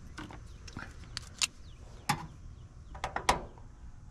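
Scattered light clicks and taps of multimeter test leads and probes being handled and touched onto the metal terminals of an air-conditioner condenser, checking for voltage before work. About nine sharp ticks at irregular intervals.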